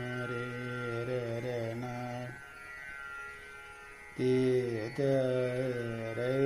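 Male voice singing a Hindustani classical line in long held, gliding notes, with a pause of about two seconds near the middle, over a faint steady drone.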